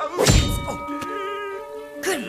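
Cartoon impact sound effect: a single heavy thunk about a third of a second in, followed by held ringing tones that waver, with music.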